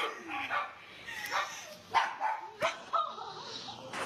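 A dog barking and yipping a few times in short, sharp bursts, over people's voices.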